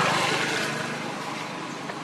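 A motor engine running, loudest at the start and fading away.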